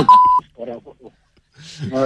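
A short, steady high-pitched censor bleep, about a third of a second long, right at the start, covering a word in a broadcast phone call. It is followed by a brief soft laugh over the telephone line.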